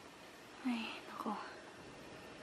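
A woman's soft whispered voice, two brief murmurs in the first half, over a faint quiet background.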